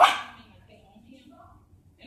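A Yorkshire terrier puppy gives one sharp, high bark right at the start during rough play with another puppy. Faint scuffling follows.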